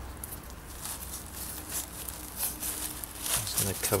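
Hands pushing into potting soil and dry leaf mulch in a polystyrene box, making scattered rustling and crackling.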